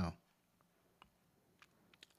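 A few faint single clicks of a computer mouse in near quiet, the clearest about a second in.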